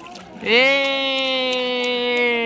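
A voice holding one long, steady 'aah'-like note, starting about half a second in, its pitch falling slowly.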